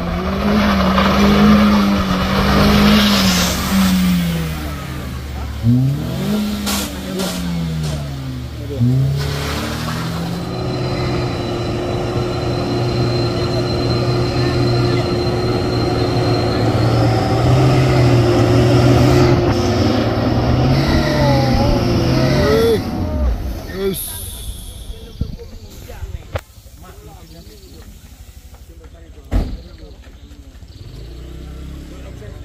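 Engines labouring up a steep gravel climb. First a small car's engine revs up and down, then a loaded Hino truck's diesel engine pulls steadily under heavy load with a high whine over it. The truck's engine note drops away about 23 seconds in, leaving a much quieter stretch with a few sharp knocks.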